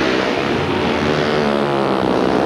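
Four speedway motorcycles racing, their 500 cc single-cylinder methanol-burning engines running hard together in a steady, dense blare.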